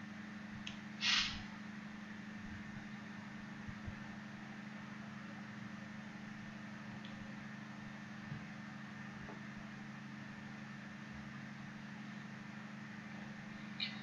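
Quiet background: a steady low hum with faint hiss, and one brief soft noise about a second in.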